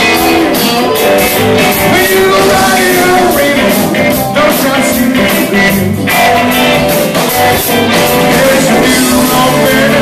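Live blues band playing: electric guitar, bass guitar, keyboard and drums together, with a steady drum beat.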